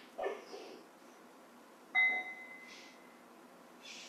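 A meditation bell struck once about two seconds in, giving a clear high ring that fades within about a second, marking the close of the talk before the dedication.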